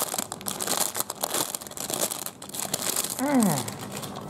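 Clear plastic packaging bag crinkling and rustling as hands unwrap a small plastic toy fan from it, a continuous run of sharp crackles.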